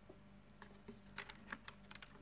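Faint, quick light clicks and taps, about eight in a second and a half, from a hand handling the small plastic ZMax headband unit, over a low steady hum.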